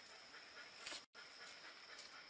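Near silence: a faint even hiss with a thin steady high tone, broken by short complete dropouts, and a brief rustle about a second in.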